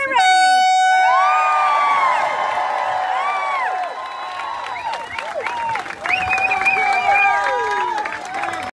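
A single air-horn blast of just under a second at the start, the signal that starts the swim, followed by a crowd of spectators cheering, whooping and shouting.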